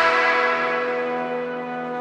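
The last note of the background music, a sustained ringing chord left to fade out slowly.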